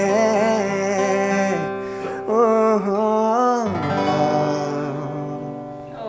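Acoustic guitar strummed under a held, wavering melody line that bends up and down, the closing notes of a song; about two-thirds of the way in the melody stops and the last guitar chord rings out and fades.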